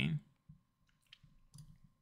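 A few faint, separate computer mouse clicks, after the tail of a spoken word at the very start.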